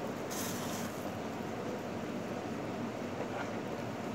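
Steady, even background rush of room noise, with a short crinkle of a clear plastic food glove about half a second in.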